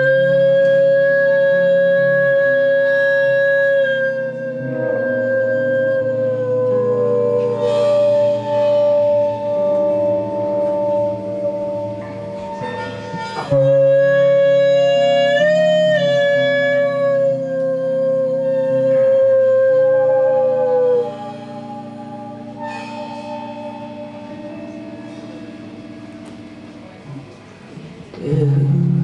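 A woman singing long, held notes into a microphone, with a slight bend in pitch, over a low, sustained instrumental accompaniment. The voice holds two long notes, the second starting about halfway through, then drops away about three quarters of the way in, leaving the quieter accompaniment.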